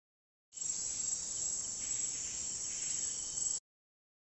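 Dense, steady, high-pitched chorus of Amazon rainforest insects, cutting in about half a second in and stopping abruptly shortly before the end.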